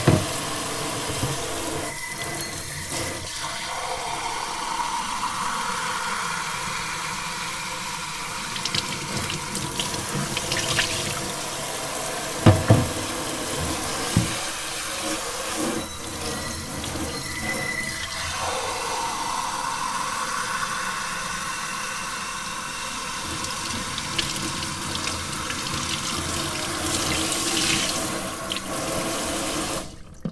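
Kitchen faucet spray running into a stainless steel sink while glass mason jars are rinsed under it, with a few sharp clinks and knocks of the jars. The water shuts off at the very end.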